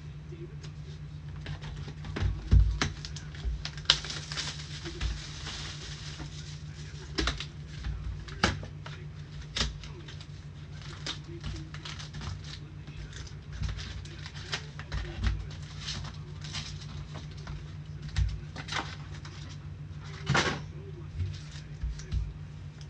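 Gloved hands opening and handling trading-card packs and cards: plastic wrappers crinkling and rustling, and cards and packs clicking and tapping at irregular moments, with a few soft thumps. A longer crinkling rustle comes about four seconds in. A steady low hum runs underneath.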